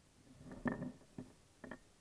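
Handling noise: a few short knocks and clicks as a stainless steel pocket multi-tool and a pen are picked up and moved about on a wooden table. The loudest knock comes about two-thirds of a second in, with two lighter clicks after it.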